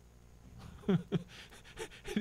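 A man chuckling quietly into a close microphone: breathy exhalations with two short, falling laugh sounds about a second in.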